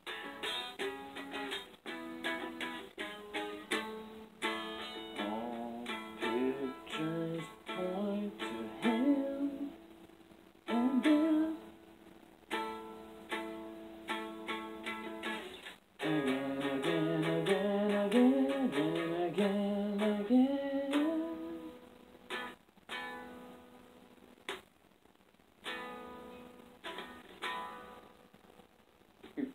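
Music: a plucked string instrument picking notes that ring and fade, with a sliding, wavering melody line over it in two stretches.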